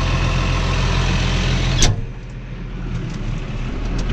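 McCormick tractor's diesel engine running steadily, heard through the open cab door. About two seconds in the cab door shuts with one sharp clunk, and the engine sound drops and turns muffled inside the closed cab.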